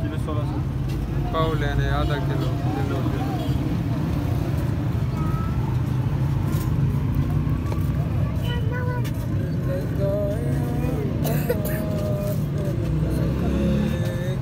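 Steady low rumble of a motor vehicle engine running close by, with people talking at times over it.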